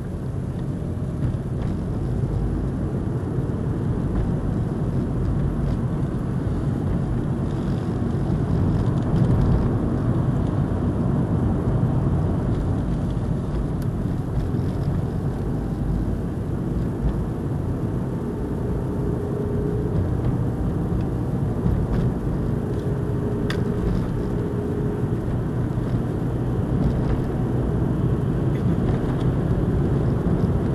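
Steady low rumble of a car driving along city streets, heard from inside the cabin: tyre and engine noise that holds even throughout.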